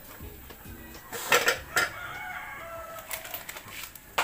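Two sharp clinks, then one long drawn-out bird call in the second half that drifts slightly in pitch, heard behind the room sound.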